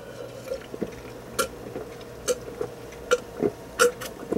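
A person gulping a carbonated energy drink from a glass, five swallows at an even pace of a bit under one a second.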